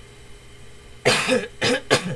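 A person coughing three times in quick succession, starting about a second in, the first cough the longest.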